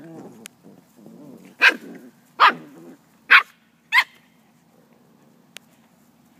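Eight-week-old puppies play-fighting: low grumbling vocal sounds, then four sharp, loud puppy barks a little under a second apart.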